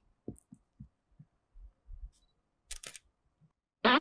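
DSLR camera shutter firing: two sharp clicks in quick succession near three seconds in, after a few soft, low thumps.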